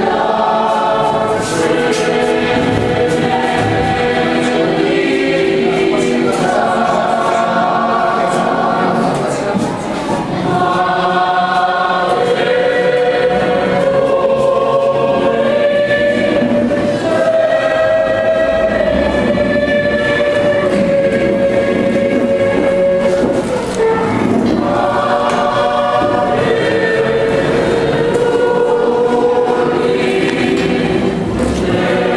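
A group of voices singing a slow hymn together in long held notes.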